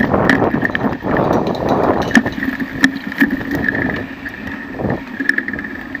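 Bicycle ridden over a sandy, bumpy forest trail: tyre rumble and rattling of the bike and mounted camera, with many sharp clicks and wind on the microphone. It gets quieter about four seconds in.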